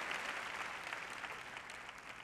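Applause from a large audience, dying away gradually.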